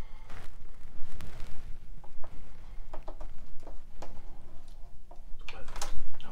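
Scattered clicks and knocks from hands working a turntable's tonearm and controls before the record plays, over a steady low hum. The loudest click comes near the end.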